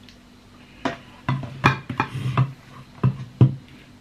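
A run of about eight sharp plastic clicks and knocks, starting about a second in, as the chopper bowl of a hand blender is handled and lifted off its base.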